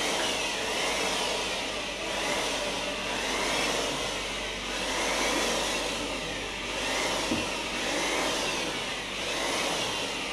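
A steady, fairly loud whooshing noise, like a running motor, that swells and eases about every one and a half seconds.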